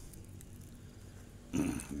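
Faint steady background noise with no distinct event, then a man's voice starts about one and a half seconds in.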